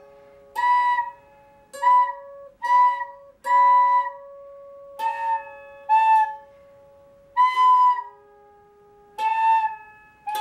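A nose flute whistling a simple tune in about eight short notes, played together with a lap harp whose plucked strings start with each note and ring on between them. The lap harp is extremely out of tune.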